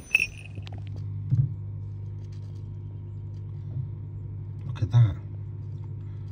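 A steady low hum, with a brief high tone at the very start and a couple of short soft sounds, one near the middle and one about five seconds in.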